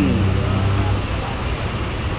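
Bus engine running with a low, steady hum, easing slightly about a second in.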